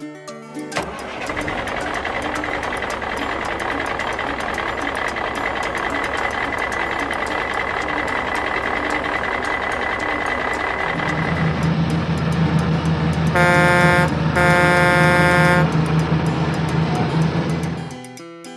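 Truck engine sound effect running steadily, changing to a deeper rumble partway through, with two truck-horn blasts, a short one and then a longer one, about three-quarters of the way in.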